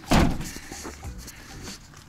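A Fiat Ducato van door slammed shut once, a single loud bang just after the start that dies away quickly.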